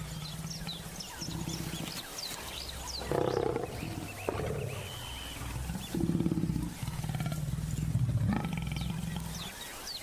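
Adolescent lions growling low and long in several drawn-out rumbles, loudest about three seconds in and again through the second half, with small birds chirping in the background.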